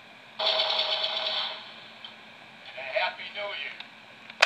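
A voice played back from a Talkboy cassette recorder's small speaker, thin and tinny with no bass. A long, loud held sound comes about half a second in, followed by a few short broken phrases near the end.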